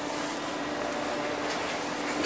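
Traction elevator running, heard from inside its glass cab: a steady hum with a low drone and an even rushing noise.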